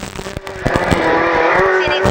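Renault Clio Williams rally car's 2.0-litre four-cylinder engine heard from inside the cabin, working at high revs. After a choppy first half second the engine note steadies and climbs slowly as the car accelerates.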